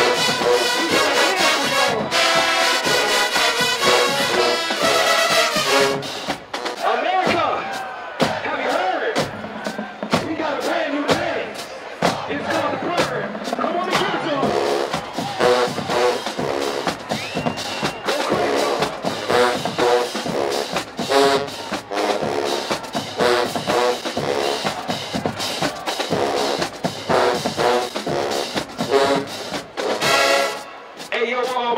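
Marching band brass and drumline playing loud sustained chords, which break off about six seconds in. Voices shouting and cheering fill the next several seconds, and from about fifteen seconds in the band plays again in short rhythmic brass hits over the drums.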